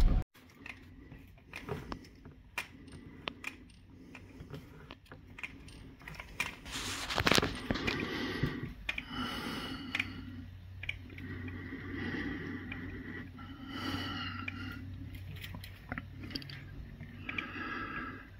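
Faint scrapes and clicks of window blinds and a handheld phone being shifted in a quiet room, with a louder rustle about seven seconds in.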